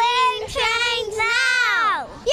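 Young children singing a short phrase to the camera in high voices, the last note sliding down in a long falling glide.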